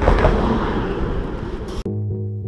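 Wind buffeting the microphone and rolling noise from a bicycle riding across a bridge walkway. Near the end it cuts off suddenly and keyboard music begins.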